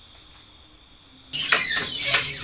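Wooden wardrobe door being swung shut and its handle worked: quiet at first, then a sudden noisy burst with several clicks about two-thirds of the way in.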